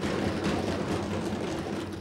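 Steady room noise of a large assembly hall picked up by the floor microphone: an even hiss with a faint low hum and no distinct events.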